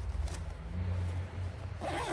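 A fabric headrest first-aid bag being handled, with a short rustle of cloth or zipper near the end, over a low steady rumble.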